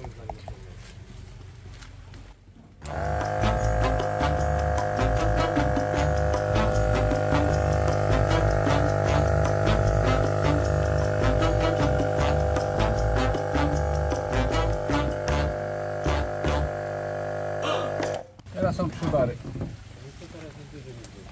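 Twin-cylinder air compressor running with a steady drone, pumping up the truck's air suspension bags. It starts about three seconds in and cuts off a couple of seconds before the end.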